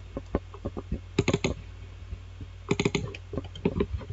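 Irregular clicking of a computer keyboard and mouse, with two quick flurries of clicks about a second in and near three seconds, over a faint steady low hum.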